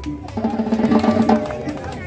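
Live street band playing Latin dance music: snare and conga drums keeping a steady beat under a repeated pitched melody line.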